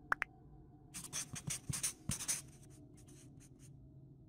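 Sound-effect scribbling of a marker writing quickly, a run of scratchy strokes from about a second in, thinning to lighter strokes near the end. Two quick short chirps come at the very start.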